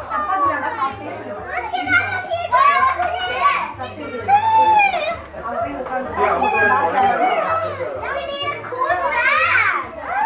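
Several young children shouting, chattering and squealing together as they play, with high excited squeals about four and a half seconds in and again near the end.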